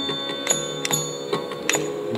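Carnatic percussion accompaniment: mridangam and ghatam strokes, sharp and ringing, about two a second, over sustained violin tones.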